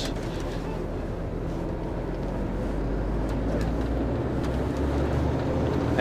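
HGV diesel engine heard from inside the cab as the lorry drives along, a steady low drone that grows gradually louder, with a change in its note about four seconds in.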